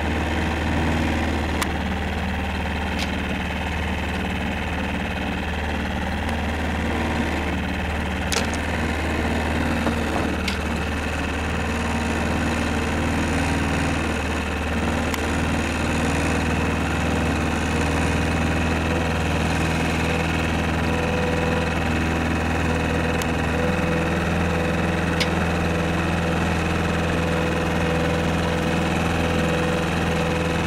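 Boat engine running steadily at a constant speed, a low even drone, with a few faint clicks.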